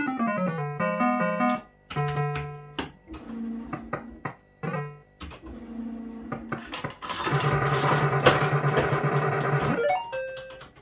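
A 1987 JPM Hot Pot Deluxe fruit machine playing its electronic tunes and bleeps: a falling run of notes at the start, then short tones and clicks as the reels spin. The last three seconds are a louder, busier stretch of sound.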